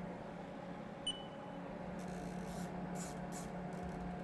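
Steady low electrical hum of a Haas TM-1P CNC mill standing by while its spindle is hand-jogged slowly into position. About a second in there is a short high beep with a click, and near the end some faint rustling.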